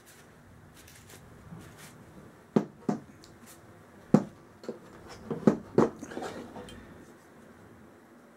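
Handling noise from a disassembled Crosman 760 pellet rifle: a string of light clicks and knocks as the barrel assembly and plastic receiver parts are moved and set down on a plastic tabletop, most of them between about two and a half and six seconds in.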